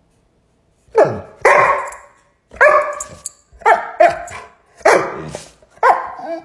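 Dog barking: about seven short, loud barks in quick succession, starting about a second in.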